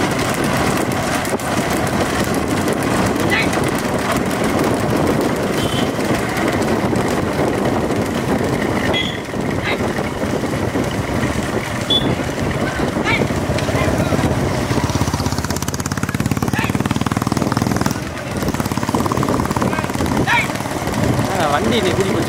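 Several motorcycle engines running together as they follow a bullock cart at speed, with men shouting over them.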